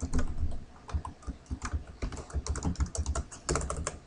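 Typing on a computer keyboard: a run of quick, irregular keystrokes, coming faster in the second half.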